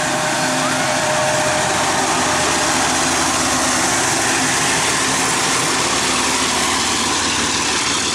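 Two GE diesel-electric locomotives, a GEU-40 leading and an AGE-30 behind, passing close by as they haul a container train away from the station. Their engines and wheels make a loud, steady noise, with a humming tone in the first couple of seconds.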